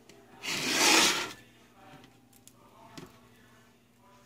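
Raw skinless chicken longanisa being set by hand into a nonstick pan: one scraping rush of noise about half a second in, lasting about a second, then a few faint taps.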